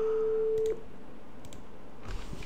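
Steady sine-wave test tone at about 440 Hz from a GStreamer audiotestsrc pipeline, played through the app's audio output; it cuts off suddenly under a second in. A few faint clicks follow.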